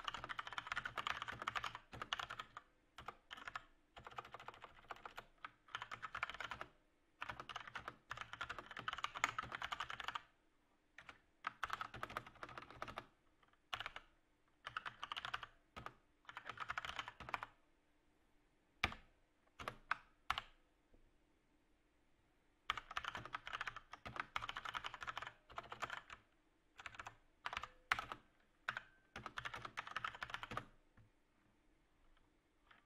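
Typing on a computer keyboard: fast runs of key clicks lasting a second or two, broken by short pauses, with a longer lull past the middle holding only a few single keystrokes.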